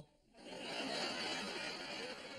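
Studio audience laughing, a broad spread of crowd laughter that swells in after a sudden dip at the start.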